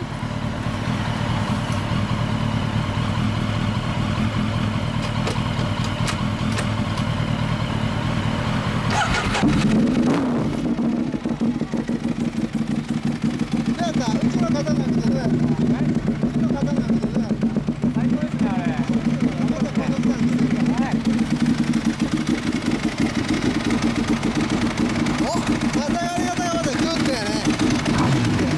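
Motorcycle engine idling. About ten seconds in, a louder engine starts with a brief rise in revs and settles into an uneven, pulsing idle.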